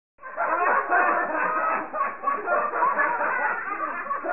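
Several voices chattering and jeering over one another, with laughter, starting just after a moment of silence; the sound is band-limited and dull.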